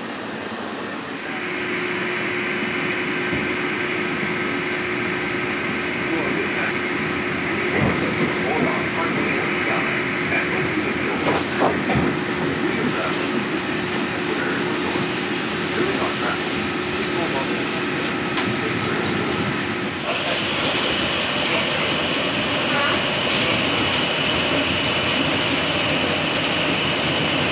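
Walt Disney World Mark VI monorail train running, heard from inside the car: steady rolling noise under a held whine. About twenty seconds in, the whine shifts to a higher pitch.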